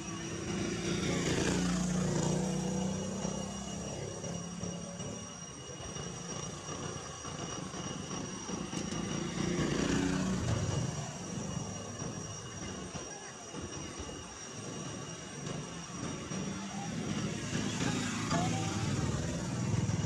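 Engine noise of passing motor vehicles, swelling and fading about three times over a steady low hum.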